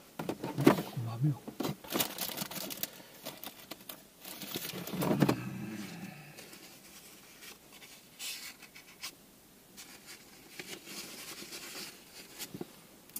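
Rustling and small clicks of hands handling fabric and a paper coffee filter at close range, with a brief low voice about five seconds in.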